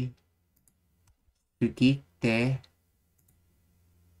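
A voice speaking two short words a little past halfway through, with faint mouse clicks scattered around them and a faint low hum near the end.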